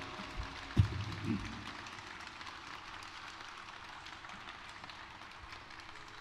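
Audience applauding lightly as a ghazal ends, slowly fading, with a last low tabla stroke about a second in.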